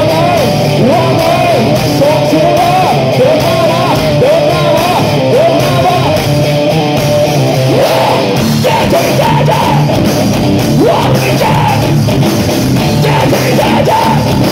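A heavy metal band playing live and loud, with electric guitars, bass and drums under a vocalist singing into a microphone.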